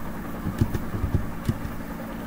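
Computer keyboard typing: a few short, soft key taps over a steady low background hum.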